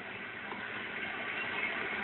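Steady, even background noise from a televised baseball broadcast, with no commentary over it.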